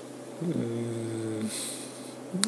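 A man's drawn-out hesitation hum, a filled pause at one steady pitch lasting about a second, followed by a short breath in.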